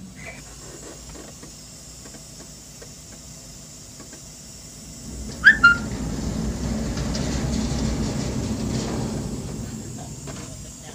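Large sheet-metal gate pushed open by hand: a short squeak about five and a half seconds in, then a low rolling rumble for about four seconds as the gate moves.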